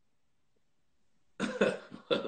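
A man bursts into loud, hoarse laughter about a second and a half in, after a nearly silent stretch.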